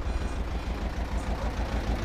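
Tractor engine idling, a steady low rumble.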